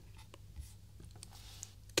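Quiet pause: a low steady hum with a few faint scattered clicks and soft rustles.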